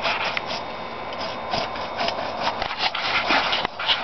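Bow saw cutting into a pecan tree, a string of short, irregular scraping strokes a few per second. The cut is nearly through and the top is about to fall.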